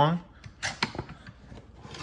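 A hand rummaging among tools and parts in a plastic toolbox: a few light clicks and knocks as items are shifted, then fainter rustling.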